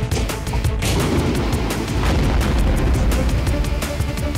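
A cartoon bomb blast: a deep rumbling boom swelling about a second in and lasting a couple of seconds, under a continuous musical score.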